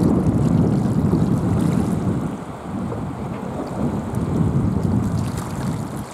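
Wind buffeting the microphone, a loud gusting rumble that eases about two and a half seconds in, picks up again and drops away near the end.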